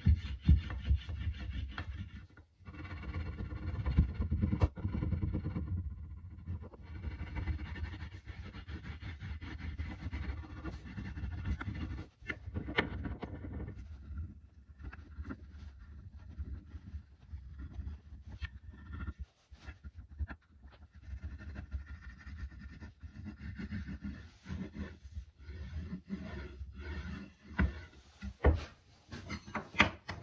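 A chunk of beeswax rubbed hard back and forth along a sanded wooden axe handle, a run of uneven scrubbing strokes that work wax into the grain, louder in the first half and broken by short pauses.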